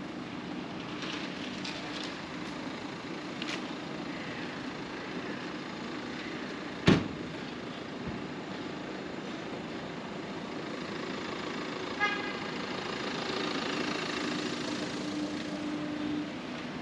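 Steady city-street traffic noise, broken by a single sharp bang about seven seconds in, the loudest sound, and a short car-horn toot about twelve seconds in, followed by a low steady engine note near the end.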